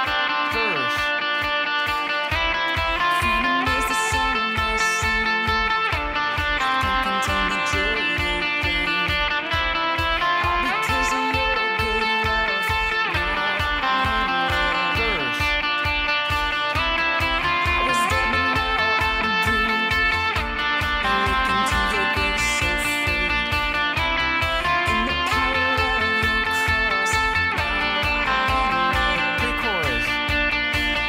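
Jazzmaster electric guitar with Lollar pickups, through overdrive and delay pedals into a miked amplifier, picking a ringing chord-based part with sustained, overlapping notes. A steady low rhythmic pulse joins about two seconds in.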